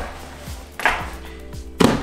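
A Lowepro 450 AW camera backpack being lifted and set down upright on a table over background music: a short rustle about a second in, then a thump near the end as the bag lands.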